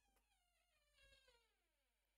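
A door creaking open as a cat pushes it, one long, faint creak that slides steadily down in pitch.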